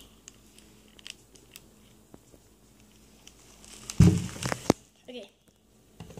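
Mostly quiet, with a few faint ticks, then about four seconds in a short, loud burst of handling noise: knocks and crinkling.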